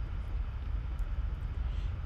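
Steady low rumble of background noise with a faint hiss, heard over a video-call microphone.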